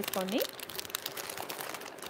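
Thin plastic crinkling, such as clear jewellery packets being handled: a rapid run of small crackles that grows quieter near the end.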